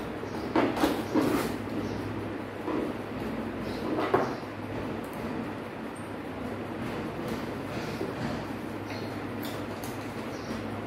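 Hand-handling noise at a wiring bench: a few short clicks and knocks of wires and small electrical fittings being handled, most of them in the first second or so and one more about four seconds in, over a steady low hum.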